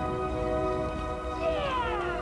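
Orchestral film score with held chords. About one and a half seconds in, an orca call with several overtones falls in pitch over the music.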